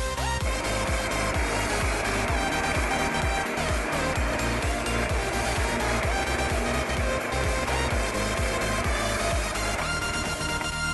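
Electronic background music with a steady beat. Under it, a Parkside bench drill press with a hole saw cuts into a wooden block, a steady cutting noise that starts about half a second in and stops just before the end.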